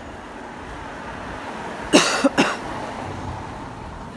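Three quick coughs about two seconds in, over the steady hum of street traffic.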